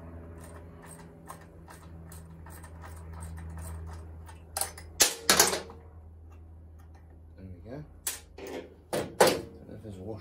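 A spanner and long-nose pliers working small bolts on a moped's rear suspension: light metal clicking, then several sharp metal clinks about halfway through and again near the end, over a steady low hum.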